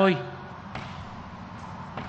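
A man's voice through a lectern microphone ends a word, then a pause of nearly two seconds with only a steady, faint background hiss.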